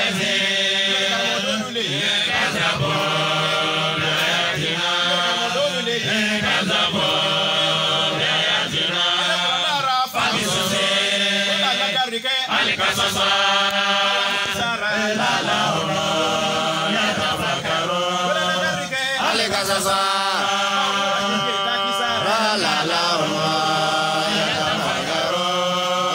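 Men chanting an Islamic devotional song into microphones, amplified through a sound system, in repeating phrases of long held notes. A steady low hum runs beneath the voices.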